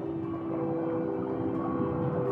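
Background music of steady held notes over a rushing water noise.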